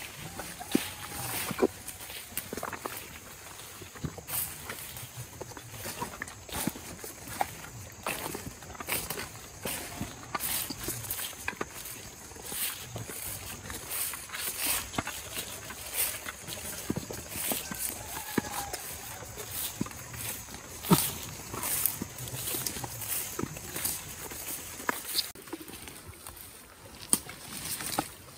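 Footsteps and rustling of several people walking through grass and leafy undergrowth, with irregular crackles of brushed leaves and stems. A steady high insect buzz runs underneath and stops about 25 seconds in.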